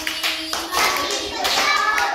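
A group of young children clapping their hands in a rough rhythm, with children's voices singing along in the second half.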